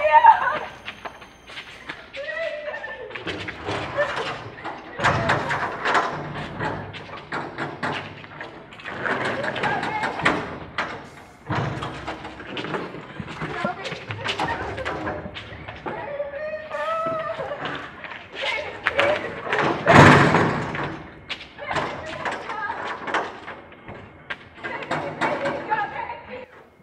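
Repeated knocks and thuds on a steel compound gate, with a loud bang about twenty seconds in and a muffled voice calling at times.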